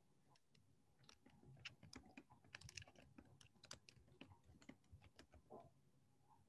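Faint, irregular small clicks and scrapes of a grapefruit spoon hollowing out the cap of a white button mushroom, starting about a second in.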